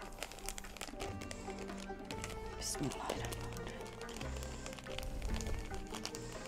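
Soft background music with long held low notes, and faint crinkling of a small plastic bag as grated coconut is shaken out of it into a bowl.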